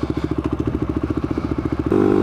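Quad (ATV) engine running at low revs with a rapid, even pulse. Near the end it changes abruptly to a steadier, louder engine note.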